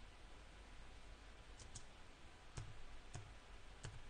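A few faint, sharp clicks, about five, spaced irregularly over near-silent room tone.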